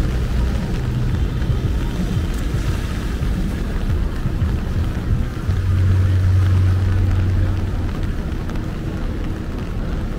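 Rainy city street ambience: traffic running on wet pavement under a constant low rumble, with a steady low hum that swells for a couple of seconds past the middle.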